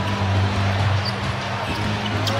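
Steady arena crowd noise in a large hall, with a basketball being dribbled on the hardwood court.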